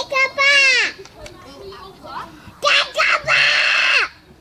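Children's loud wordless vocalising: a high shout that falls in pitch over about a second, then near the end two short yells and a longer harsh scream.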